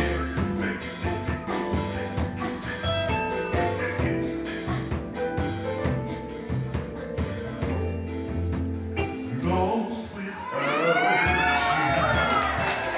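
Live band playing a slow R&B song, with sustained chords over a bass line; near the end a voice comes in on a long, wavering held note.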